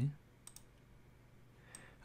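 A few faint computer mouse clicks over quiet room tone: two close together about half a second in and one near the end.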